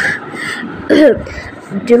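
A person clearing their throat and coughing close to the microphone: a sharp burst at the start, then a short voiced rasp about a second in.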